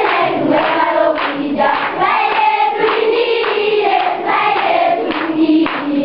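A group of voices singing together in chorus, steady and fairly loud.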